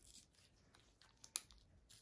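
Faint crackles and small ticks of a gloved hand tearing open a sealed dust-wipe packet, with one sharper click about two-thirds of the way through.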